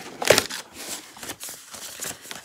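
Rustling, crinkling and small clicks of a cardboard advent calendar box and its contents being handled and rummaged through, with one louder knock about a third of a second in.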